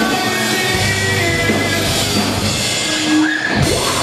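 Hardcore rock band playing live: distorted electric guitars and a drum kit, loud and continuous.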